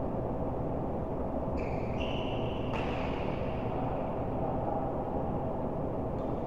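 Indoor badminton hall ambience: a steady low rumble with a faint hum. A brief high squeak comes about two seconds in, followed just under a second later by a single sharp hit from the play on court.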